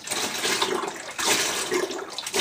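Hydrogen peroxide pouring from an upturned bottle into a plastic bucket of mixture, a steady splashing pour with some glugging.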